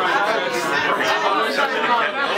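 Indistinct chatter of a crowd of men talking over one another in a room, no single voice standing out.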